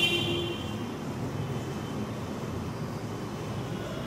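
Marker pen writing on a whiteboard, with a high squeak at the start that dies away about half a second in, over a steady low background rumble.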